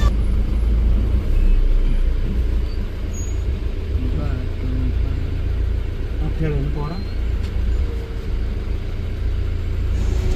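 Steady low rumble of a truck's engine and road noise heard inside the cab while driving, with a brief faint voice partway through.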